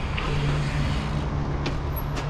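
Bicycle rolling over asphalt and up a skatepark ramp: a steady low hum from the tyres and drivetrain, with a couple of short clicks.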